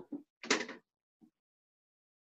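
A large plastic set square knocking against a whiteboard as it is moved into place. There is one short knock about half a second in, with fainter ones just before and after it.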